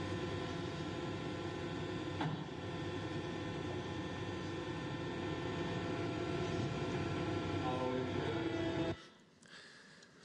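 Forklift running with a steady mechanical hum. A man's voice exclaims briefly near the end, and all the sound cuts off suddenly about nine seconds in.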